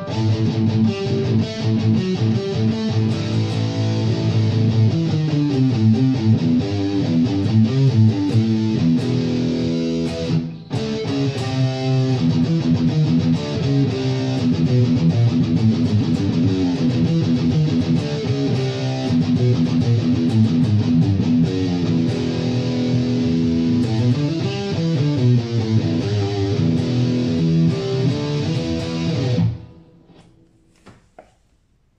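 Electric guitar (Epiphone Les Paul, bridge pickup) played through the Boss GT-1000's Metal Core distortion type, a high-gain distorted tone, heard from studio monitors through a phone microphone. The playing breaks off briefly about ten seconds in and stops just before the end.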